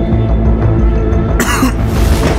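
Tense film-score music with a steady low bass. About one and a half seconds in, a car door closes with a sudden loud slam.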